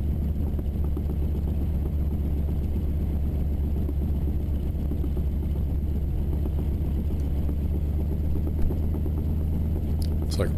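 North American AT-6D's Pratt & Whitney R-1340 Wasp radial engine running steadily at low taxiing power, a deep even drone heard from the cockpit, with one brief tick near the end.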